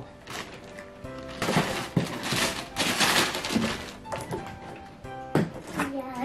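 A plastic mailer bag rustling and crinkling for about two seconds while a cardboard toy box is pulled out of it, with a few knocks of the box, over steady background music.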